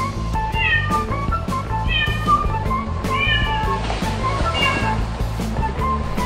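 A kitten meowing about four times, short high calls spaced a second or so apart, over background music with a steady beat.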